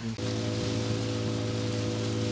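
A steady, unchanging hum of several low tones with an even hiss over it.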